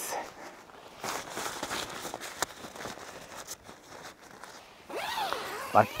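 Nylon tent flysheet rustling as the door panel is handled and hung back, with a single sharp click about two and a half seconds in.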